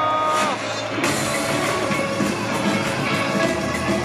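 Live rock band music recorded at a concert: a held note slides down and ends about half a second in, then the sound changes abruptly to a different stretch of full-band music with drums.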